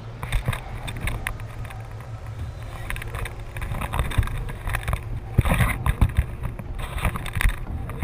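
Wind buffeting the microphone of a harness-mounted action camera as a tandem paraglider launches with its wing inflated overhead: a constant low rumble with gusts, and irregular knocks and rustles from the harness and gear, loudest past the middle.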